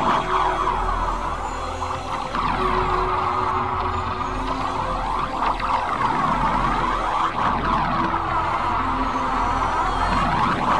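Anime-style energy aura power-up sound effect: a continuous warbling made of many overlapping rising and falling sweeps over a low drone.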